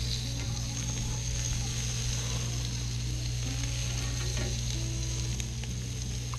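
Chicken thighs sizzling steadily on the hot cast-iron grates of a Weber Q2000 gas grill as they are turned over with tongs, searing over direct heat.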